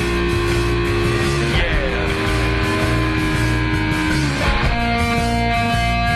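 Live hard-rock instrumental passage: an electric guitar holds long notes, sliding to a new pitch twice, over a pounding rhythm section. No vocals.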